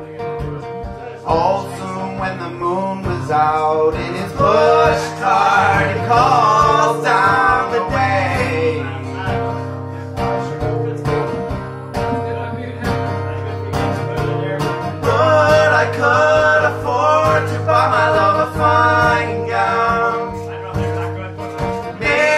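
Acoustic guitar strummed under a man's singing voice in a slow folk song, played live.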